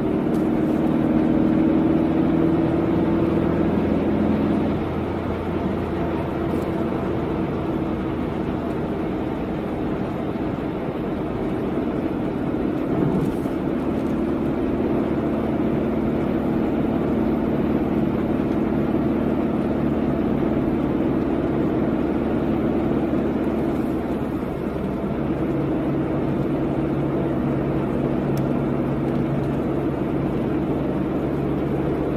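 A car being driven, heard from inside the cabin: a steady engine hum over tyre and road noise. The engine note drops about four seconds in and changes again later.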